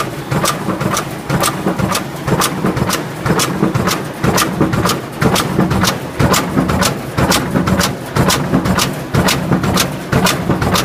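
Expanded metal machine running at speed, its blade slitting and stretching sheet metal into diamond mesh with a sharp, regular stroke about twice a second over the steady hum of its drive.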